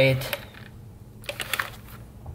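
A few light clicks and taps from hands handling small fittings and a line by the engine's intake, after the end of a spoken word.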